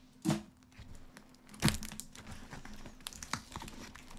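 A tape-wrapped cardboard parcel being handled and pulled at while someone tries to get it open: crinkling and tearing of the tape and wrapping, with a few sharp knocks, the loudest about a second and a half in.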